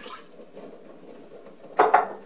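Apple cider vinegar poured from a glass measuring cup into a stainless steel saucepan, a steady faint pouring noise. It ends with a short, louder clink of kitchenware near the end.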